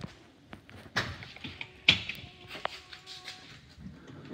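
Stryker powered ambulance stretcher knocking and clacking as it is handled in the back of the ambulance. There are three or four separate sharp knocks about a second apart, with a faint steady tone in between.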